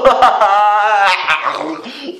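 A young man's pained whimpering, with one drawn-out wavering whine about half a second in. It is his reaction to a mouthful of ground cinnamon burning his mouth and throat.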